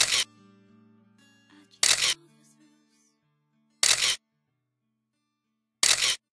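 Camera shutter sound effect snapping about every two seconds as each photo changes, each one short and loud. Under the first three seconds the sustained last notes of a song die away.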